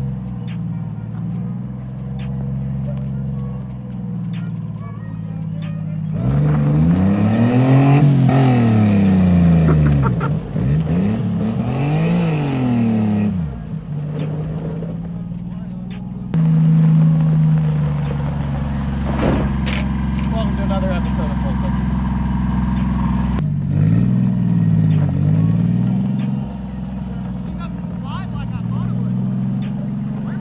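Honda Acty mini truck's small three-cylinder engine running and being revved hard as it drives on gravel, its pitch rising and falling in three long swells, with steadier running between.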